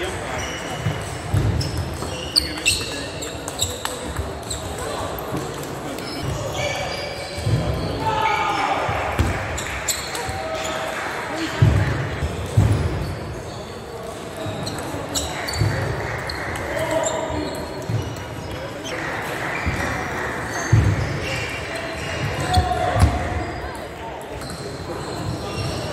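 Table tennis rallies: the ball clicking sharply off the bats and the table, many quick ticks, with low thumps of the players' footwork on the wooden sports-hall floor every second or two. Indistinct voices murmur from around the hall.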